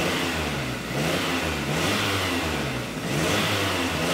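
Car's 16-valve engine revved by hand at the throttle under the hood, its pitch rising and falling several times as the throttle is opened and let go. This is done to richen the mixture and see whether the O2 sensor reads higher voltage.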